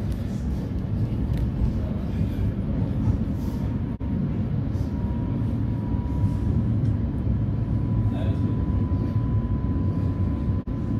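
Oslo Metro train heard from inside the carriage while running: a steady low rumble of wheels on rail. About halfway through, a thin steady whine comes in and holds.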